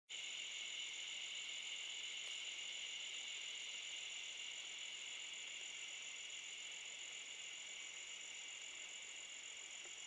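Steady, high-pitched chorus of insects such as crickets, unbroken throughout.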